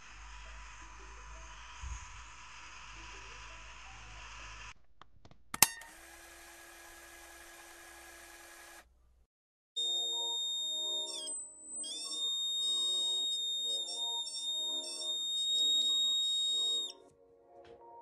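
Small hobby DC motor with a plastic propeller spinning, switched on through a BC547 transistor, running with a steady whirr for the first five seconds, then a sharp click. Later, a piezo buzzer sounds a steady high-pitched tone for about seven seconds, shifting pitch once near its start, as the darkness-sensor circuit switches it on.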